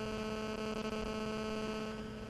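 Steady electrical hum from the sound or recording system: one unchanging low buzz with evenly spaced overtones, over faint room hiss.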